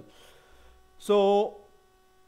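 Faint steady electrical hum, broken about a second in by a man's short, flat, held 'uhh'.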